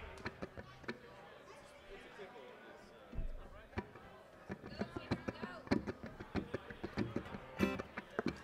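Stray plucked notes and taps from the band's acoustic string instruments, picked quietly between songs, with faint voices under them. The notes come sparsely at first and more often from about three seconds in.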